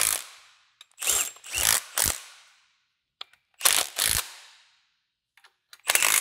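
Milwaukee Fuel cordless impact wrench run in several short bursts, driving bolts through an engine stand's mounting head into the back of a Ford V8 block.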